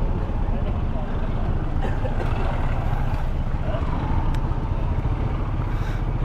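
Steady low rumble of street traffic, with motorcycles and a bus waiting close by, and people talking in the background.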